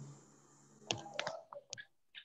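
A quick cluster of faint, sharp clicks and light knocks about a second in: a phone being handled, heard over a video call.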